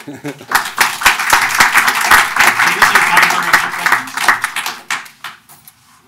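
Audience applauding, rising quickly about half a second in and dying away near five seconds.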